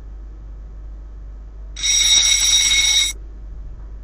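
Quiz countdown timer's time-up alert: a bright bell-like ringing tone lasting a little over a second, starting about two seconds in as the timer reaches zero. A low steady hum lies under it throughout.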